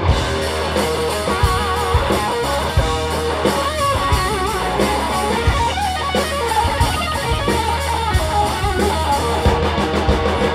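Live blues-rock band playing: a Stratocaster-style electric guitar takes a lead solo, holding notes with wide vibrato, over electric bass and a drum kit.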